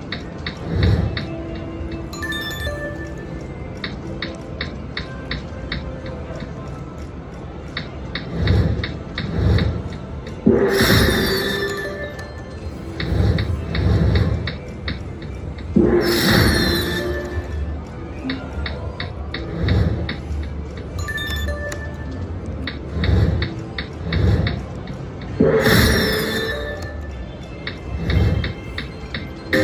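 Empresses vs Emperors video slot machine playing its electronic game music and spin sounds over several spins, with regular ticking as the reels run and several louder bursts of bright chimes.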